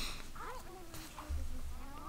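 Faint, high, pitch-bending character voice from the audio drama playing quietly in the background, with a low hum that comes in about a second and a half in.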